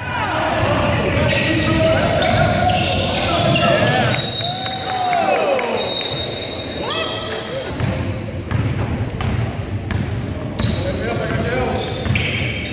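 Basketball being dribbled on a hardwood gym floor, with sneakers squeaking on the court and players and spectators calling out, all echoing in the large hall.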